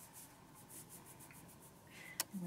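Faint, rhythmic rubbing of hands kneading a client's head through a towel during a massage.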